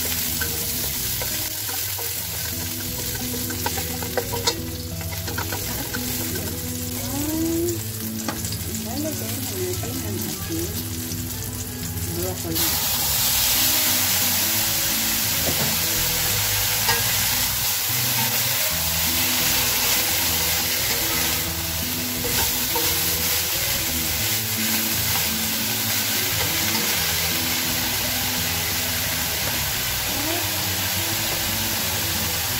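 Garlic and chilli sizzling in oil in a stainless wok, stirred with a spatula; about twelve seconds in the sizzle grows louder as blanched broccoli florets go in and are stir-fried.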